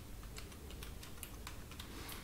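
Typing on a computer keyboard: a quick, irregular run of light key clicks, several a second.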